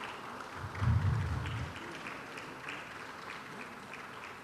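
Audience applauding, many scattered claps, with a brief low rumble about a second in.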